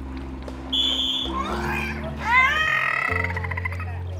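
A bottlenose dolphin vocalizing at the surface: a squeaky call that rises in pitch and breaks into a rapid buzzing pulse, over background music. A short, steady, high whistle tone sounds about a second in.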